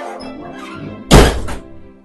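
A single loud thud about a second in, dying away within half a second, over soft background music with sustained tones.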